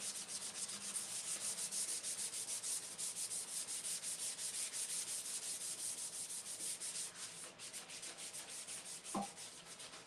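Hand-scuffing a Harley-Davidson FXR's steel fuel tank with an abrasive pad: quick, even back-and-forth rasping strokes that taper off after about seven seconds, with a brief rising squeak near the end. The old gloss is being sanded off so the primer has something to stick to.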